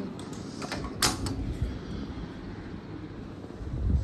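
Sliding glass door with a stainless-steel handle being opened: a sharp click about a second in, then a low rumble near the end.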